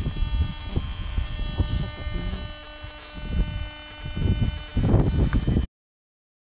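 A steady buzzing hum made of many fixed tones, with irregular low rumbling gusts of wind on the microphone, cutting off suddenly near the end.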